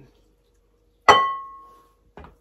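A single bright clink on a glass mixing bowl about a second in, ringing with a clear tone that fades away over about a second.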